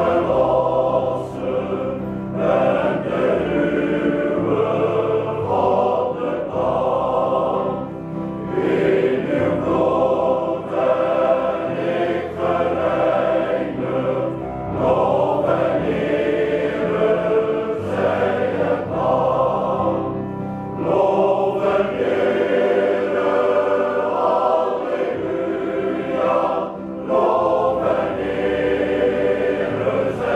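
Male voice choir singing in several parts, with sustained chords in phrases that break off briefly every few seconds.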